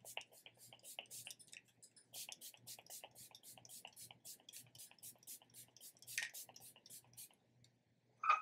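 Faint, rapid spritzes of a pump-mist bottle of e.l.f. Stay All Night setting spray, about five short hisses a second. There is a brief pause about two seconds in, and the spraying stops about seven seconds in.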